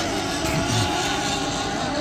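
Several 1/8-scale nitro RC hydroplanes' small two-stroke glow engines running steadily at speed out on the water, heard from afar as an even engine drone with faint high tones.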